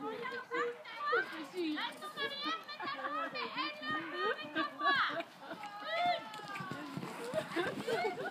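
Young voices chattering and calling out throughout, high-pitched, with a long drawn-out call about six seconds in.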